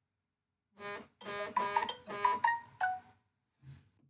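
A short melody of several steady-pitched notes lasting about two and a half seconds, the later notes stepping down in pitch, followed by a brief faint sound near the end.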